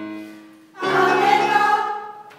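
A keyboard chord dies away, then an amateur mixed choir sings a short held chord starting just under a second in and stopping together near the end.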